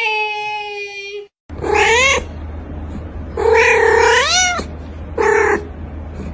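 Domestic cat meowing three times: a short rising meow, a long drawn-out meow that bends upward at the end, and a short final one. Before them a steady, held high-pitched call sounds for about a second and cuts off abruptly.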